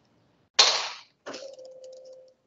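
A loud, sharp knock about half a second in, dying away quickly, then a softer knock, followed by a faint steady tone.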